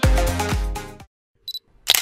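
Electronic dance music cuts off about a second in; after a brief silence a short high beep sounds, then a single camera shutter click near the end.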